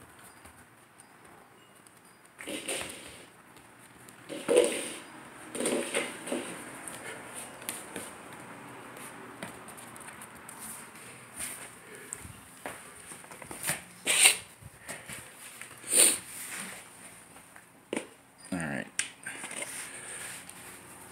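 Border collie puppy moving about on a hardwood floor around a plastic cup, with scattered sharp taps and knocks; the two loudest come about two seconds apart past the middle.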